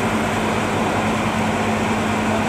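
A machine running steadily, a constant drone with a low hum.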